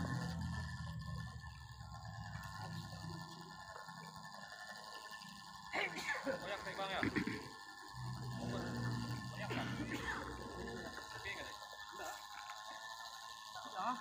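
Faint voices of people talking at a distance over quiet background music with steady held tones.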